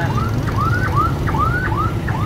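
Street traffic of motorbikes and a bus running close by, over which a continuous stream of short rising chirps sounds, several a second and overlapping.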